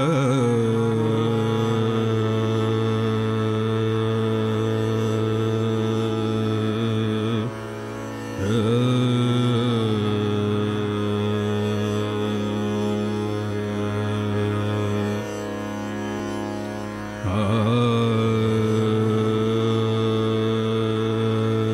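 Male Hindustani classical vocalist singing raag Darbari Kanada: three long held notes, each entered with a wavering, oscillating slide in pitch, over a steady accompaniment that carries on in the short gap between phrases.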